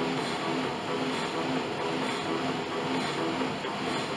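Bowflex Max Trainer M7's air-resistance fan whirring steadily under a hard workout pace.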